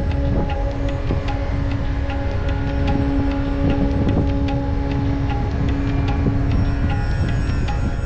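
Background music of slow, long-held droning tones over a steady low rumble.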